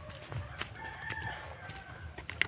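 A rooster crowing once: a drawn-out call of about a second, starting a little after half a second in.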